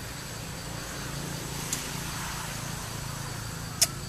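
Steady low hum under a faint, even high-pitched insect drone, broken by two sharp clicks: a light one under two seconds in and a louder one near the end.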